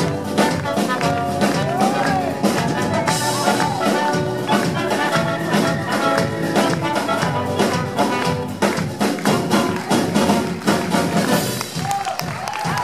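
Live band playing an upbeat number with acoustic guitar and drums under a clarinet and trumpet melody, the brass to the fore.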